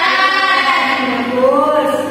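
Singing by several voices, with long held notes that glide up and down in pitch.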